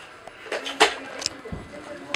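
A few sharp clicks and knocks, the loudest a little under a second in, followed by a low thud about a second and a half in.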